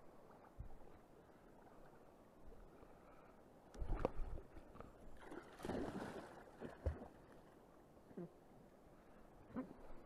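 Shallow river water splashing close by for about a second and a half, after a thump about four seconds in. A few light knocks of fishing gear being handled follow.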